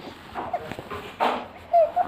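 A one-month-old baby making a few short coos and a breathy noise, the loudest a brief high coo near the end.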